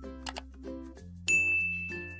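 Subscribe-button sound effect: two quick clicks, then about a second and a quarter in a bright bell ding that rings on and slowly fades. Light background music plays underneath.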